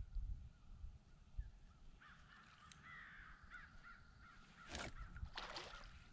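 A crow cawing: two harsh calls close together near the end, with fainter, higher wavering calls before them.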